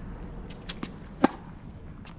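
Tennis rally sounds: a few faint pops of ball on racquet and court, then one sharp, loud pop of a tennis ball a little past halfway.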